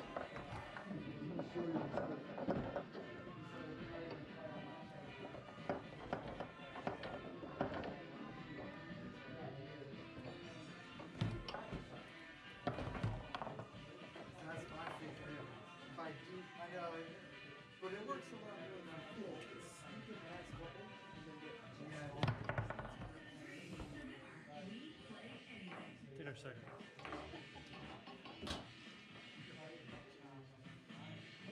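Background music with voices in the room, broken by sharp knocks and clacks from foosball play: the hard ball struck by the rod men and hitting the table's walls.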